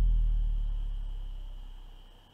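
The ringing tail of a deep cinematic boom from the trailer's music, a low tone sinking slowly in pitch and fading steadily away.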